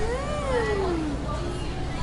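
A voice drawing out one long wordless 'ooh', rising in pitch and then sliding down over about a second, over the low murmur of a busy indoor market.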